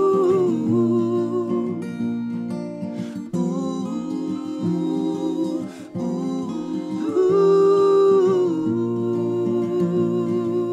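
Acoustic guitars playing under wordless vocal harmonies: long held notes sung together in phrases of a few seconds, with short dips between them.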